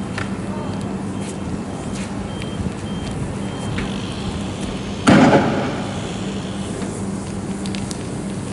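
Tear gas launchers firing: scattered faint pops over a steady low rumble, then one loud bang about five seconds in that dies away over about a second.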